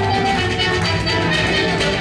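Live Irish traditional tune played by a small band: fiddle melody over a bodhrán beat and a strummed string instrument, running steadily.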